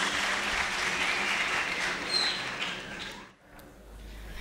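Audience applauding, the clapping dying away about three seconds in.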